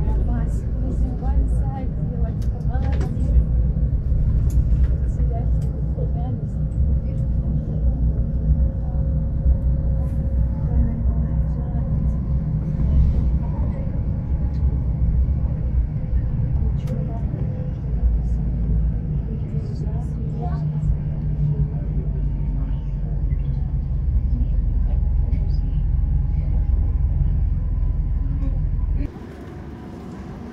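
Airport apron passenger bus driving, heard from inside the cabin: a loud, steady low rumble from the engine and tyres, with small rattles and passengers' indistinct chatter. The sound drops away sharply near the end.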